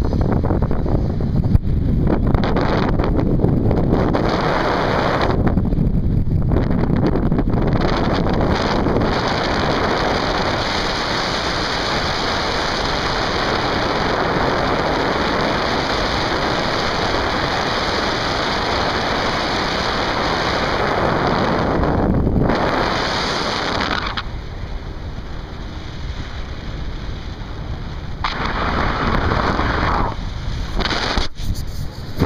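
Wind rushing over the microphone during a paraglider flight: a steady loud buffeting noise that eases for a few seconds near the end, then picks up again.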